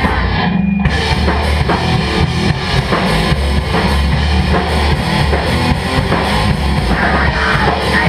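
Crust punk band playing live: pounding drum kit with cymbals, distorted electric guitar and bass, with no vocals. Just under a second in, the cymbals and highs briefly drop out while one low note holds, then the full band comes back in.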